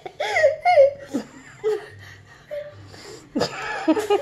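Young child laughing in high giggles, loudest in the first second, followed by shorter, quieter bits of laughter.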